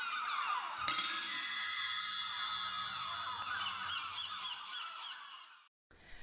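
Opening sound logo: a busy mass of overlapping gliding, warbling tones, with a bright chime struck about a second in whose ringing slowly dies away. The whole sound fades out just before the end.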